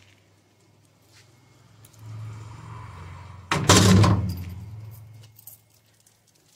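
Handling noise from things being moved and picked up: a sudden loud clatter about three and a half seconds in fades out over a second or so. A faint low hum sits under it, with a few small clicks afterwards.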